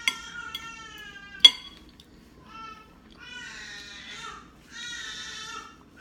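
A small child crying in the background in drawn-out, high-pitched wails, in two stretches. A fork clinks against a plate, with a few light taps in the first second and one sharp clink about a second and a half in, the loudest sound.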